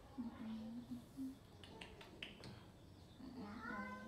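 Faint, soft voice sounds: a few short, low hums in the first second or so, then a longer, wavering one near the end, with a few light clicks between.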